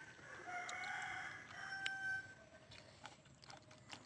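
A rooster crowing once: one long call of about two seconds, ending about halfway through, with faint short clicks around it.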